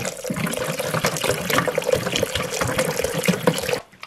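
Water pouring in a steady stream into a pot of liquid soup base, splashing into the liquid. It stops abruptly shortly before the end.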